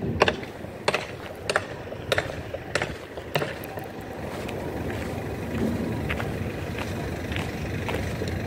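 Footsteps on gravelly ground, a sharp step about every 0.6 s, then a steady low rumble that slowly grows louder after about four seconds.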